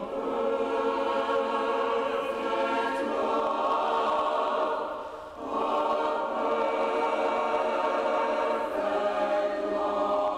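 Mixed adult church choir singing held, sustained phrases, with a brief break for breath about five seconds in before the voices come back in.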